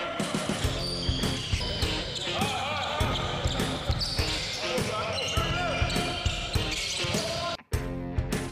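Basketballs bouncing on an indoor court floor, a run of repeated thuds, with music playing underneath. It all cuts off suddenly near the end.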